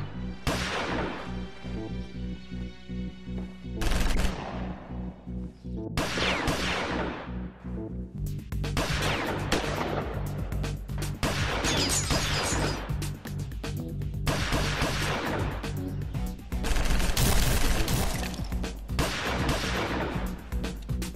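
Gunfight from rifles and pistols: a few single heavy shots with long fading tails in the first six seconds, then dense rapid gunfire from about eight seconds in. A film music bed with a steady low bass runs underneath.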